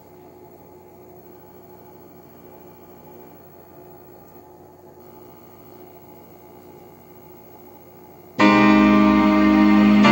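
Faint steady background noise, then about eight seconds in a piano intro to a slow ballad starts suddenly and loudly.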